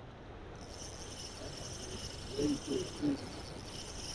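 Shallow creek water running steadily. A continuous high-pitched whine lies over it, and a few short low murmurs come a little past halfway.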